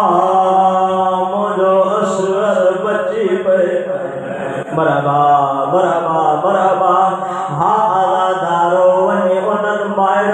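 A man's voice chanting a Shia mourning lament in long, held, wavering notes through a microphone.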